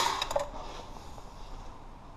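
A few light clicks and a short ringing metallic clink in the first half second, then faint handling noise as the camera is moved.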